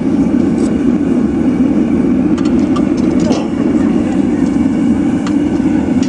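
Gas forge burner running steadily with a low, even rushing noise, with a few faint light clicks about halfway through.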